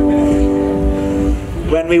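A single held drone note with many overtones, steady in pitch, fading out about a second and a half in, over a soft low pulse about twice a second; a man's voice starts speaking right after.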